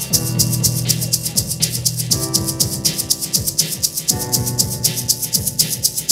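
Live band playing an instrumental passage. A hand shaker keeps a steady rhythm of about four to five shakes a second over acoustic guitar and keyboard chords that change about every two seconds.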